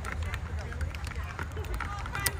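Faint voices of players and spectators calling out across a softball field, over a steady low rumble on the microphone.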